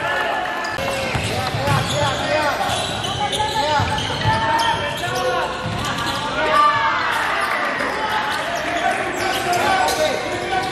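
Live sound of an indoor basketball game on a hardwood court: a basketball dribbling, many short sneaker squeaks, and players and spectators calling out over one another in the reverberant gym.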